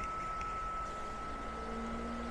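Steady whir and hum of a space heater, a heat gun and an electric fan running together off a portable power station, with a thin high whine throughout. A low steady hum comes in about a second in and a higher tone joins it near the end.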